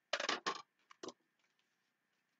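Plastic cutting plates of a manual die-cutting machine being handled and set down: a few short clattering knocks in the first second, then quiet.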